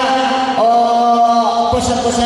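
Men singing or chanting into microphones over a PA system, holding long, steady notes.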